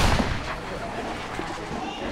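A single heavy thump right at the start, then quieter scuffing and a few light taps.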